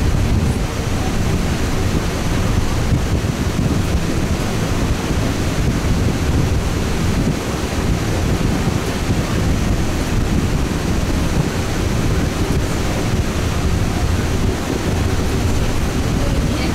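Steady rush of wind and road noise inside a moving bus, with wind buffeting the microphone and a deep rumble underneath.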